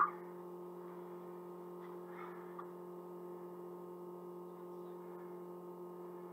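Steady low electrical mains hum with several level tones and no speech, with a faint soft rustle about two seconds in.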